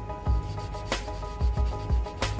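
Small piece of sandpaper rubbed back and forth by hand, wet-sanding a painted model car part into a milky slurry, over background music with a beat.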